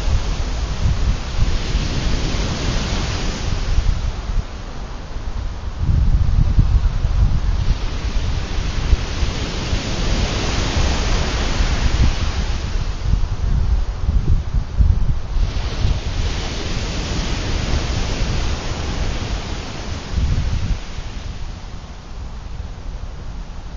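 Ocean surf breaking and washing up the beach, its hiss swelling about three times as waves come in, with heavy wind buffeting the microphone, stronger from about six seconds in.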